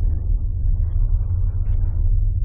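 Steady deep low rumble, a constant drone with fainter hiss above it.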